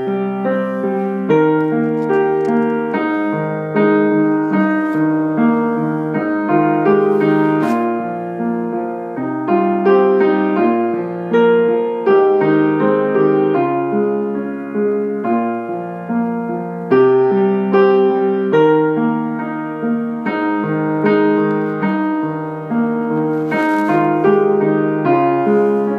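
Piano playing a slow succession of chords, each one struck and left to ring and fade before the next.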